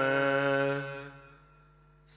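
A voice chanting Gurbani in the drawn-out melodic recitation of the Hukamnama, holding one long steady note. The note fades away about a second in, leaving a short pause.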